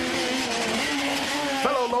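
Rally car engine running hard at high revs, with a steady hiss of tyres and spray on the wet road.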